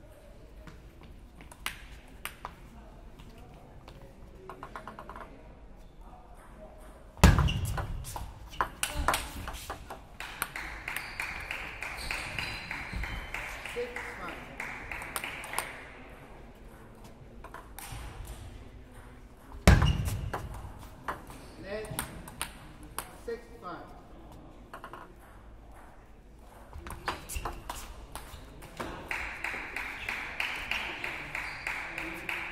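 Table tennis ball clicking off paddles and the table through rallies, with two loud thumps, about 7 and 20 seconds in, each followed by a quick run of clicks. Voices carry through the hall.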